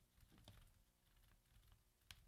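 Near silence with faint taps and scratches of chalk writing on a blackboard.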